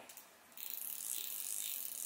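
Orvis Clearwater Large Arbor II fly reel clicking rapidly as its spool is spun, starting about half a second in.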